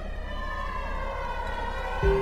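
A sustained, siren-like electronic tone in a dance-music mix: several pitches held together, bending gently in pitch at a steady level.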